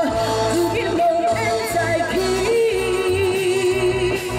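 A woman singing live into a microphone over amplified backing music, holding a long note with vibrato through the second half.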